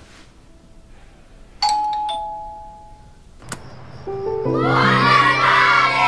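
A doorbell chimes a two-note ding-dong, a higher note then a lower one, over soft background music. A click follows. About four seconds in, a group of children's voices breaks out together over loud swelling music chords.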